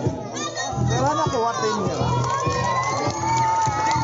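Crowd of spectators, many of them children, shouting and cheering, with one long held high shout through the second half, over background music with a steady bass.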